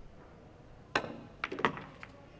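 Pool cue tip striking the cue ball with a sharp click, then about half a second later two quick clacks of the cue ball hitting object balls.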